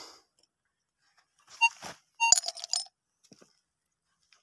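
Metal clinks with a short ring, once about a second and a half in and then a quick run of several a little after two seconds, as a small metal pot and old coins are handled and knock together.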